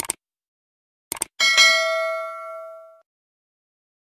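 Subscribe-button sound effect: short mouse clicks, then a bell dings once and rings out for about a second and a half.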